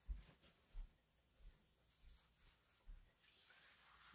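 Near silence with a few faint, low thumps about two-thirds of a second apart: footsteps crossing the room.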